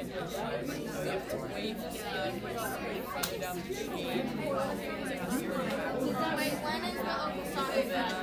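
Many students talking at once in a classroom: overlapping, indistinct chatter with no single voice standing out.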